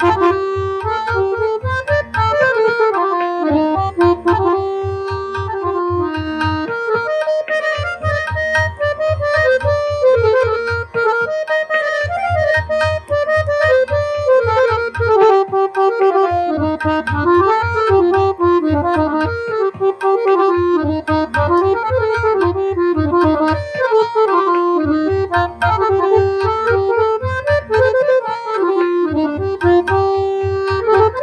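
Harmonium played solo in a fast, ornamented melodic line that runs up and down. Underneath it, a low, regular pulsing comes and goes in stretches of a few seconds.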